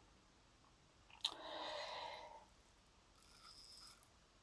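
Near silence, broken about a second in by a short, soft rush of breath that starts with a slight click.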